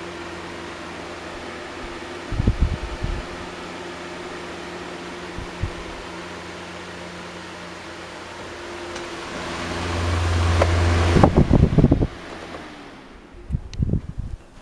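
Chrome oscillating desk fan running with a steady motor hum and rush of air. Its airflow buffets the microphone in brief gusts a couple of seconds in, and much harder as it swings round toward the microphone about ten seconds in. The sound then drops away suddenly, with a few thumps near the end.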